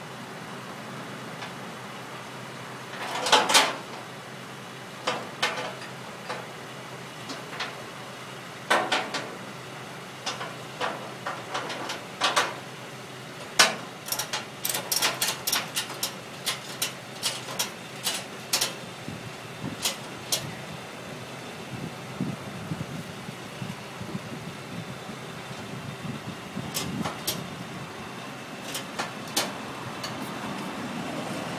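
Irregular sharp clicks, knocks and short rattles of gear being handled at a vehicle, in clusters, over a steady low background rumble.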